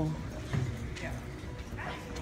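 Indistinct voices and short vocal sounds in a large, busy room.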